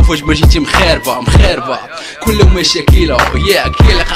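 Hip hop track: a rapping voice over a beat with a heavy kick drum.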